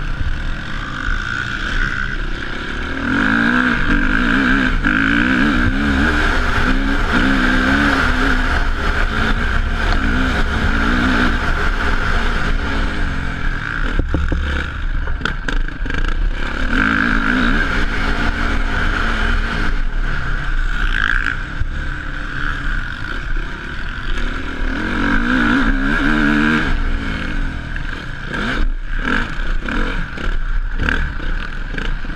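Motocross bike engine revving hard and backing off as it is ridden round the track, its pitch climbing in several surges and dropping between them, picked up close by a helmet-mounted camera. A few sharp knocks come through about halfway and again near the end.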